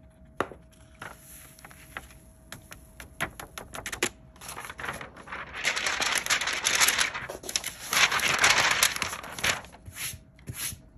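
Paper and hand handling sounds as excess glitter is tipped from a folded sheet of paper back into its jar. A run of light ticks comes first, then a longer spell of loud scratchy rustling and rubbing in the second half.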